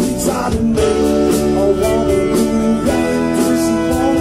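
Live soul-blues band playing a slow groove: electric guitars, Hammond organ and drums keeping a steady beat, with a male lead voice singing over it.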